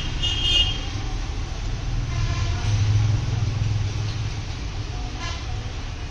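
A steady low rumble like background traffic, swelling about halfway through, with a short high-pitched toot near the start.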